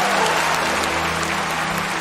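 Audience applauding over a live band holding sustained chords in a slow bolero instrumental passage.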